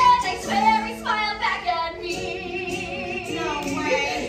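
A woman singing a musical-theatre number with musical backing. She sings shifting phrases for about two seconds, then holds one long high note with vibrato to the end.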